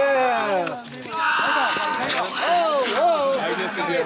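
Several people's voices shouting and calling out over one another, with a brief lull about a second in.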